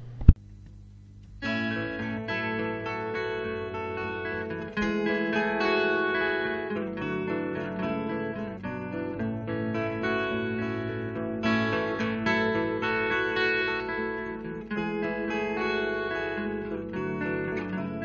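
Instrumental introduction of a singer-songwriter ballad led by guitar. A sharp click comes just after the start, and the guitar music begins about a second and a half in. It swells a little around five seconds and again around eleven seconds.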